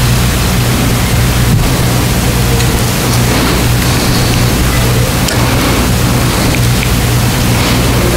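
Steady loud hiss over a low electrical hum, with no voice: the noise floor of the sermon's microphone and recording chain.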